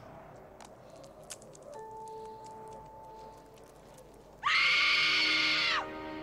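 A film soundtrack. Quiet ambience with a soft held note gives way, about four and a half seconds in, to a loud, high-pitched scream lasting about a second and a half, its pitch dropping as it ends.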